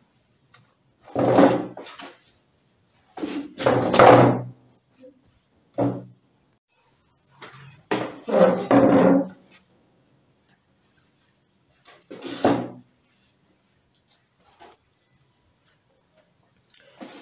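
Handling noise at a sewing machine table: about six short, dull knocks and rustles with pauses between them, as fabric, lining and crinoline are moved and laid in place.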